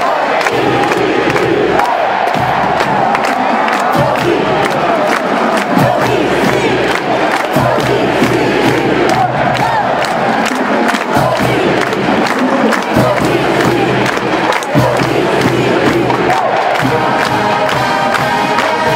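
Large marching band's brass (trumpets, trombones and sousaphones) playing under loud, continuous stadium crowd noise and cheering. The brass comes through more clearly near the end.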